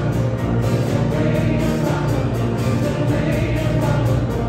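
Live worship band with drums, piano and guitars playing a contemporary worship song, with a woman singing lead and a group of voices singing along.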